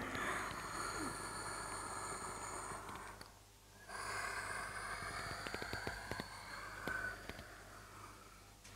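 A woman's long breaths: one drawn-out breath of about three seconds, a short pause, then a second long breath, with a few faint clicks near the end.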